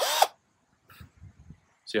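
Cordless drill with a wire-brush attachment for carving foam, spinning up and winding down in one short burst at the very start.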